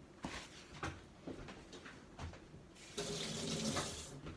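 A few light knocks, then water running loudly for about a second near the end.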